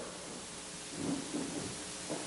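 A pause in speech: steady, faint hiss of room tone and recording noise, with a slight low sound about a second in.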